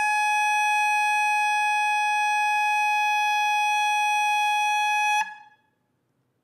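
Bass clarinet holding one long high note, steady in pitch and loud, with a bright edge of many overtones. It cuts off about five seconds in, leaving a short room echo before near silence.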